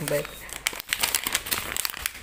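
Crinkling, a quick irregular run of small crackles, like thin material being handled.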